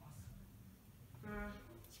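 Quiet room tone with a faint low rumble, broken by a brief spoken word near the end.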